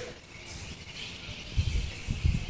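A pause in the talk: faint, steady background hiss, with a few low thumps near the end.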